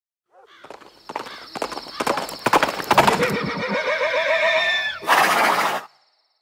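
Horse hoofbeats coming in and quickening, then a horse neighing for about two seconds, ending in a short burst of noise that cuts off suddenly.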